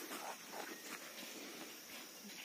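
Quiet outdoor field ambience with a faint, steady high-pitched insect chirring in the background.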